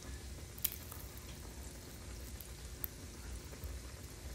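Akara bean fritters frying in hot fresh oil in a small pan, a steady faint sizzle with a couple of small ticks.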